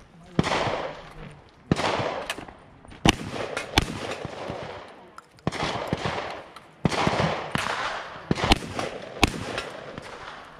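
A rifle fired repeatedly at steel targets, about ten sharp shots spaced roughly a second apart with a lull in the middle, each followed by a short echo.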